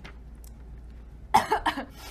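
A woman coughing: a quick run of coughs lasting about half a second, a little past halfway through.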